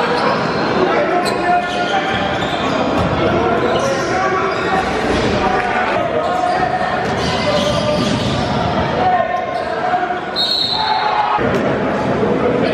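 Basketball bouncing on an indoor court amid the crowd's voices and shouts echoing in a large gym. A short, high referee's whistle sounds about ten seconds in.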